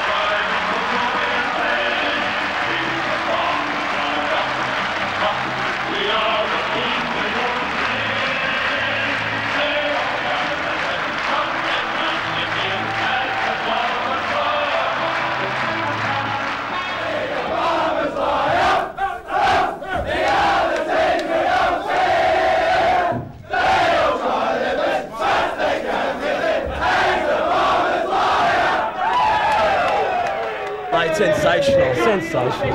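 A large stadium crowd cheering steadily; then, about seventeen seconds in, a group of men chanting and singing loudly together in unison, broken by short gaps.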